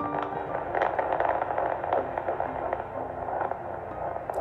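Handheld fetal Doppler's speaker giving crackling static and hiss as the probe moves over the gel on a pregnant belly, still searching for the baby's heartbeat.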